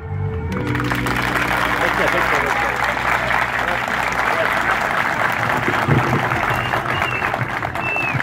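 Audience applauding, starting just after the recited poem ends, over held low notes of background music.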